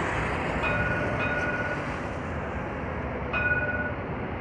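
Marcopolo double-decker coach's engine running as it pulls slowly out of a garage. A high, steady beep-like tone sounds twice in the first half and once more, loudest, near the end.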